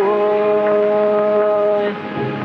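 One long note held steady in pitch for nearly two seconds in an old Hindi film song. A single sung syllable is drawn out, then breaks off near the end. The old soundtrack recording is dull, with little above the upper mid-range.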